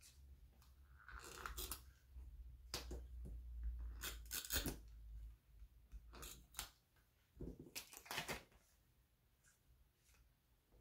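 Double-sided tape runner being drawn along the edges of cardstock in several short, faint strokes, the dispenser scraping over the paper.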